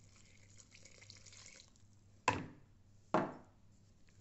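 Liquid poured into a bowl of thick chocolate cake batter for about a second and a half, then two sharp knocks just under a second apart.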